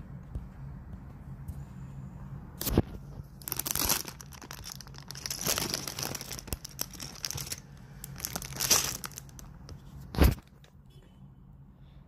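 Clear plastic bags of Lego pieces crinkling and rustling as they are handled, in several bursts, with one sharp loud crack about ten seconds in.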